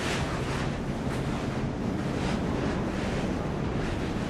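Steady rushing of surf and wind carrying into a rock tunnel, with brief scuffing footsteps on its rough floor every second or so.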